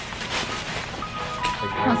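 Voices of people talking over quiet background music, with clearer speech coming in near the end.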